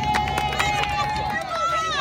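A small crowd cheering and clapping: one long, high-pitched yell is held for about a second and a half over scattered hand claps, and another voice joins near the end.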